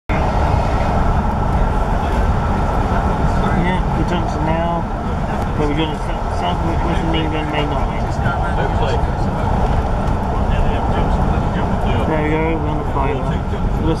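Steady rumble and rattle of a railway passenger coach running at speed on the track, heard from inside the carriage.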